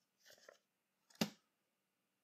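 Near quiet between words. A faint soft sound comes about a quarter second in, then a single sharp click just past a second in.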